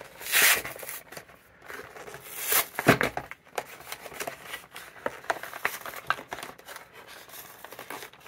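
Cardboard backing of a plastic blister pack being torn and peeled apart by hand: two louder rips, about half a second in and again around two and a half seconds, then scattered small crackles and clicks as the card is worked loose.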